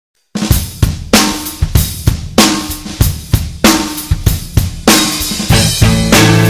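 Rock drum kit playing a steady beat on its own, with kick, snare, hi-hat and cymbals, starting about a third of a second in. A low bass line joins near the end.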